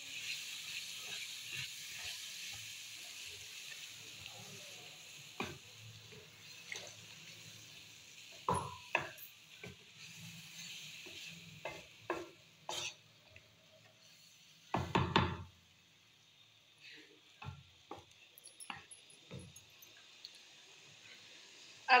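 Wooden spatula stirring and scraping a chickpea masala in a kadai as a cup of water is poured in bit by bit. The hot masala sizzles at first, and the sizzle fades over the first several seconds as the water thins it to a gravy. Scattered knocks of the spatula on the pan run throughout, with a louder burst of them about fifteen seconds in.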